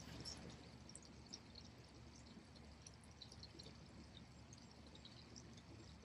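Near silence: faint, steady outdoor background noise.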